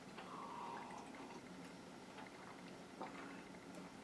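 Faint sips and swallows of a man drinking from a glass goblet.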